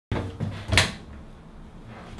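Wooden bathroom vanity cabinet doors being pulled open and knocked, with a few short clacks in the first second, the loudest near the end of that second.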